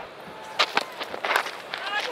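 Cricket field sound of a fast bowler's delivery: thuds of the run-up and delivery stride, then a few sharp knocks as the ball is edged off the bat toward the diving wicketkeeper. The knocks stand over a low crowd hum.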